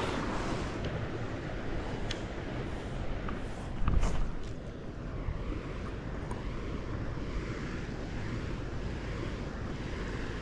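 Wind buffeting the microphone outdoors: a steady rushing noise, heaviest in the low end, with a louder gust about four seconds in.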